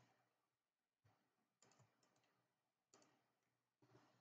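Near silence with a handful of faint computer keyboard and mouse clicks spread through it.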